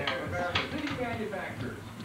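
People talking quietly and indistinctly.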